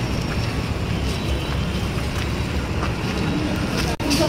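Steady low rumble of wind buffeting the microphone as the camera is carried along on foot.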